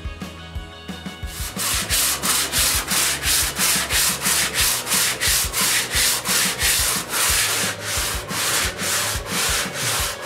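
Hand sanding: a wooden sanding block rubbed back and forth over the dried spackle coating on a mushroom-mycelium board blank, in even strokes of about two to three a second. The strokes start about a second in, after a moment of background music.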